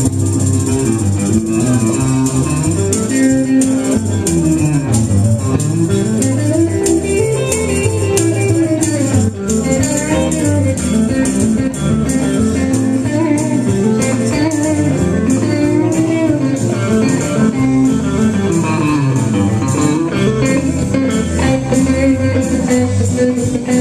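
Live country band playing an instrumental stretch: an electric guitar lead with a tambourine shaken along to a steady beat.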